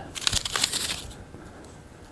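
Wooden craft sticks clicking and rubbing together as a hand gathers them into a bunch on a tabletop, a run of small clicks in the first second, then fainter handling.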